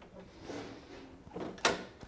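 A single sharp click from the handlebar controls of a Toro 826 snowblower, about one and a half seconds in, as the chute-control joystick or a locking handle is worked.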